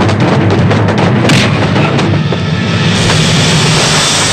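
Dubbed action-film fight soundtrack: a dramatic background score with a heavy low rumble and rapid booming hit effects. For the last second or so a loud rushing whoosh takes over as a fighter is thrown to the ground.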